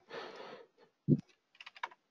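Computer keyboard typing: a quick run of sharp keystrokes near the end, after a single dull thump about a second in. A faint breathy exhale trails off at the start.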